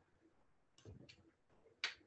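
Near silence with two faint clicks: a soft one about a second in and a sharper one near the end.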